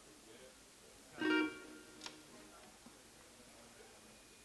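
Acoustic guitar strings sounding once, a short strum that rings and fades within about half a second, about a second in, followed by a small click.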